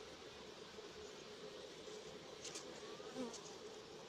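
Honeybees buzzing steadily around an open hive, a faint even hum. A few light clicks in the second half as wooden comb-honey section frames are handled.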